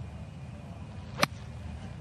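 A single sharp click of an iron striking a golf ball on a fairway approach shot, a little over a second in, over a steady low outdoor background.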